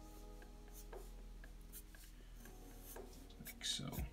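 Felt-tip marker stroking and scratching across paper in short strokes, the strokes loudest near the end, with faint music underneath.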